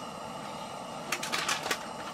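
A quick run of crackly clicks about a second in, from a corn-chip bag and the chips inside as a plastic spoon scoops into it, over a steady low hiss.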